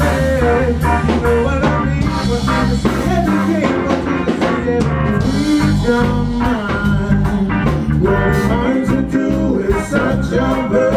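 Live band playing a song with drum kit and guitar, at a steady beat.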